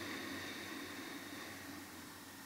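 A slow, soft exhale heard as a faint breathy hiss that gradually fades away.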